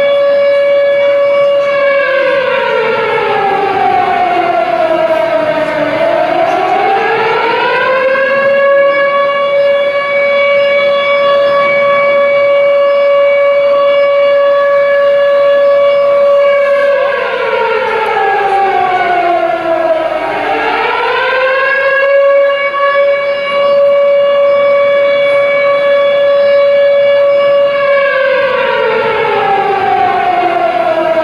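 Commemoration siren sounding for the moment of silence. It holds a steady, loud tone that twice falls in pitch and climbs back to it, then begins to fall again near the end.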